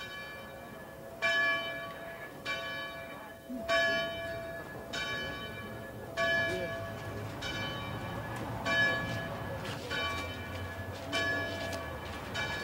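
A single bell tolling slowly and evenly, about one stroke every second and a quarter, each stroke ringing on and fading before the next.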